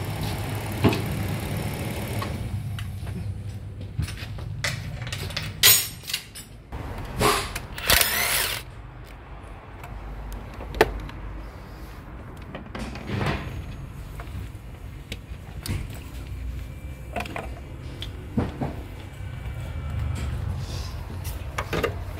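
Hyundai Grandeur XG gasoline engine idling, then switched off about two seconds in. Afterwards come scattered clicks and knocks from handling around the car, with a brief scrape near the middle.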